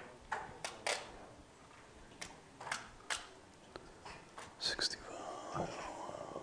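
Faint, low voices in the room, soft breathy snatches of whispered talk, with a few small clicks and knocks between them.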